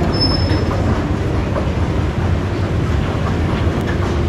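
Steady low mechanical rumble, with a brief high-pitched squeal about a quarter second in.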